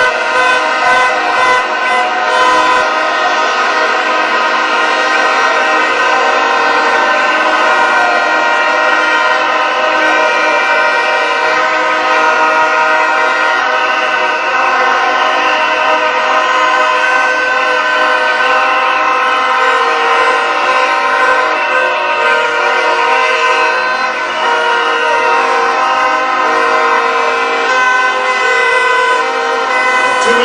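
Many plastic horns (vuvuzelas) blown together by a rally crowd: a dense, steady blare of overlapping held notes that shift slowly.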